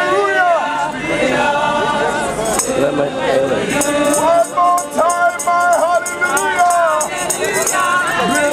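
A group of voices singing a gospel worship song, with a tambourine shaken in a steady rhythm from about two and a half seconds in.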